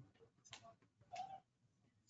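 Near silence: faint room tone with two faint, brief sounds, one about half a second in and one a little over a second in.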